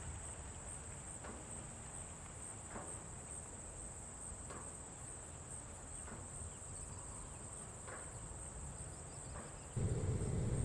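Steady, high-pitched insect trill with a fine pulsing, over a low rumble of background noise and faint short chirps every second or so. A louder low rumble comes in suddenly just before the end.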